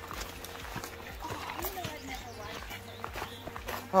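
Footsteps on a gravel trail, with irregular light crunches, under faint voices of people talking.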